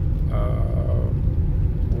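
Road and engine rumble of a moving car heard inside the cabin, with a brief steady tone about half a second in.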